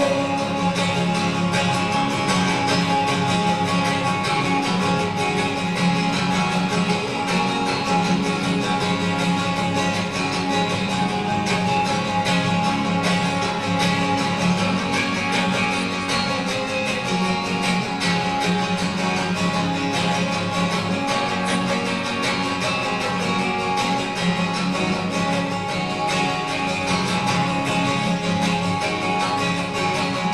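Twelve-string acoustic guitar strummed steadily through an instrumental passage of a folk song, with no singing.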